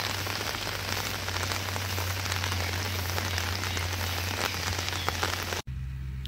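Steady rain falling, an even hiss with scattered drop ticks over a low steady hum, cutting off suddenly near the end.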